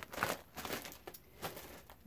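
Clear plastic bag crinkling and rustling in irregular bursts as it is handled and put down, with a few small clicks.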